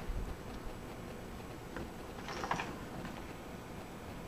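Quiet room tone with faint handling noise and a few light clicks as the opened power supply and the camera are moved about.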